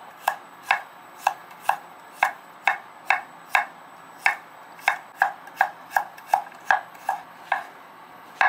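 Chef's knife slicing garlic cloves on a wooden cutting board. The blade knocks on the board in a steady run of about seventeen strokes, roughly two a second, quickening a little in the second half.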